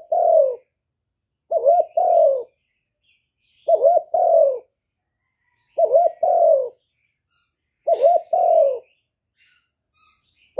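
A spotted dove (cu gáy) cooing about every two seconds, about five times in all. Each call is two quick short notes followed by a longer note that falls in pitch.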